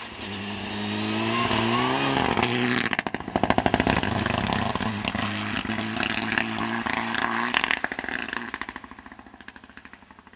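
Mitsubishi Lancer Evolution rally car's turbocharged four-cylinder engine revving hard as it goes by, its note rising and then dropping about two and a half seconds in. Two bursts of rapid crackling from the exhaust come off the throttle, and the engine fades as the car drives away.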